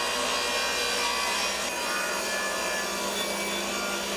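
Circular saw blade cutting through a wooden board, a steady, rasping saw noise that cuts off suddenly.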